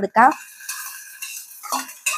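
Chopped tomatoes tipped from a steel bowl into hot oil: a soft, even sizzle with light scraping and clinking of the steel bowl against the pot.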